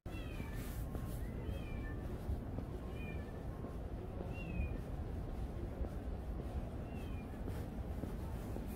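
Several short, high animal calls, each dipping in pitch, heard about seven times at irregular moments over a steady low city rumble.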